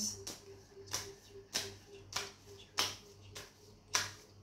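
A tarot deck being shuffled by hand, overhand, each pass giving a short sharp slap of cards in an even rhythm of a little less than two a second.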